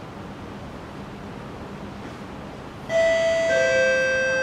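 A steady low hum of station background noise, then, about three seconds in, a two-note descending chime, a higher tone followed by a lower one, both ringing on: the station public-address chime that introduces an announcement.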